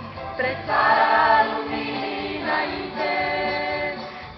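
Mixed choir of young men and women singing a Romanian hymn, with long held notes.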